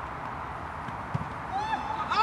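Football players shouting on an open pitch, with a dull thud of a ball being kicked about a second in. The shouts begin near the end.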